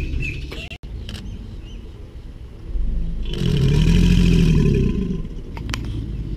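American alligator bellowing: one deep, rumbling bellow about three seconds in, lasting under two seconds, a breeding-season call. A low rumble at the start breaks off suddenly under a second in, and birds chirp faintly.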